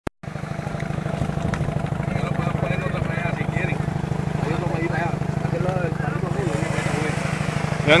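A small engine idling steadily, a low, even throb. Faint voices are in the background, and a man starts talking at the very end.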